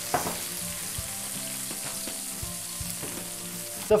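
Just-roasted char siu pork sizzling on a wire roasting rack: a steady crackle of hot fat and glaze.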